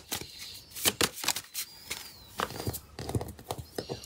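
Tarot cards being handled and shuffled by hand, a run of light, irregular card clicks and flicks. A faint high gliding whistle sounds in the background about halfway through and again near the end.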